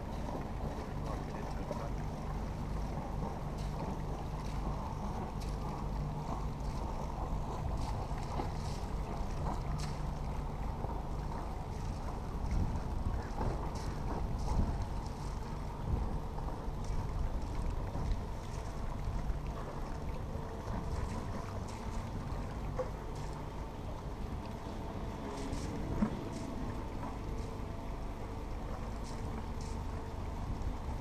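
Narrowboat's diesel engine running steadily as the boat moves slowly ahead, a low even hum, with a single sharp knock near the end.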